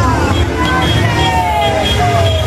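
Slow-moving Nissan pickup trucks in a parade caravan pass close by with their engines running, mixed with music and voices.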